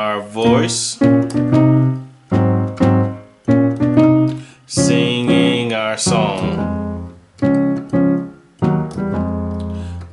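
Digital keyboard playing gospel chords in C sharp: a run of struck chords, each ringing and fading before the next. A man's voice sings along over a couple of them.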